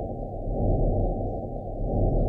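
Audio recording of the pulsar CP 1919's radio signal played as sound: low, muffled static hiss that swells in soft pulses about 1.3 seconds apart.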